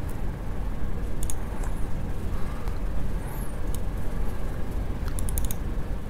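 Scattered laptop keyboard clicks, with a quick run of keystrokes about five seconds in, over a steady low rumble of room noise.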